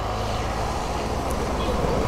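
Steady low rumble of outdoor background noise, growing slightly louder.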